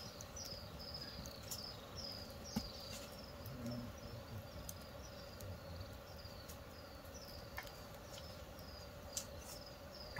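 An insect chirping steadily in the bush: short high chirps, each sliding down in pitch, about two a second, over a faint steady hum, with a few sharp knocks.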